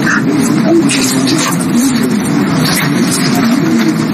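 Many people talking at once: a steady babble of overlapping voices with no single speaker standing out.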